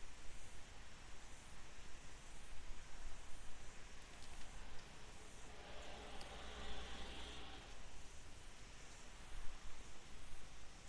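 Faint rustling of paper and masking tape being handled, over a steady low hum.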